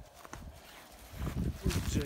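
Footsteps crunching on loose stones and gravel, a few light steps early and heavier, louder ones in the last second.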